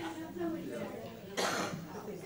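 Indistinct talking in a room, with one short cough about one and a half seconds in.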